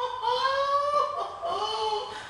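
A person laughing in a high voice, in two long drawn-out stretches with a short break between them.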